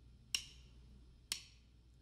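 A band's count-in before a song: two sharp clicks about a second apart, typical of drumsticks struck together to set the tempo.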